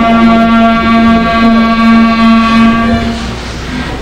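A clarinet trio holds a long final chord, steady and sustained, and cuts off together about three seconds in.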